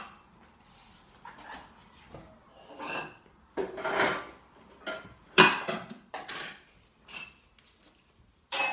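Dishes and cutlery clinking and clattering as they are handled and put away, a string of separate knocks and clinks with the loudest about five and a half seconds in.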